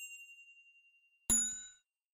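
Chime sound effects for an on-screen subscribe-and-notification-bell animation. A ringing tone fades out over the first second, then about a second and a quarter in comes a click with a bell-like ding that dies away within half a second.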